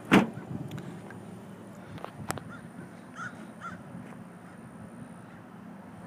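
A single heavy thump at the very start, then a steady faint background with a couple of light clicks and two short, faint calls about three seconds in.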